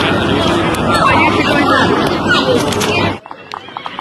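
Spectators' voices shouting and chattering at a Gaelic football game over a steady rushing noise. The sound cuts off abruptly about three seconds in, leaving a quieter stretch with a few voices and light taps.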